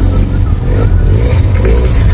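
Loud, steady low rumble of a running motor vehicle, coming in abruptly.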